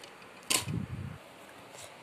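Handling noise: one sharp click about half a second in, followed by a short muffled rumble as the DVD case and camera are moved over the bed sheet.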